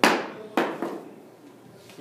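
A small ball dropped onto a hard floor and bouncing: a sharp knock, then a second knock about half a second later and a fainter third.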